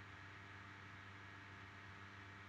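Near silence: room tone, a faint steady hum with a thin hiss.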